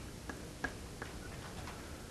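About five faint, short taps and clicks roughly a third of a second apart, the sound of writing on a lecture board, over a low room hum.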